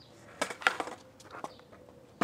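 A few sharp knocks and clicks close to the microphone, the loudest a little over half a second in, with a weaker one later and low background between them.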